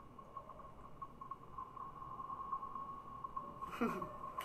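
A faint, steady high-pitched tone over a low hum, with a brief voice sound near the end.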